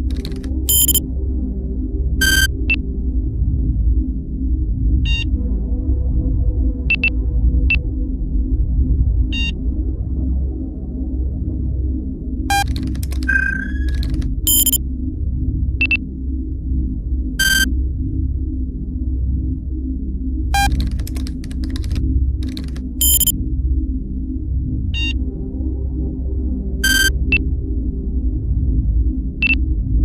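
Electronic background music: a low, steady synthesizer drone with a slow throbbing pulse, broken by short, high electronic bleeps at irregular intervals of a second or two, like computer-terminal beeps.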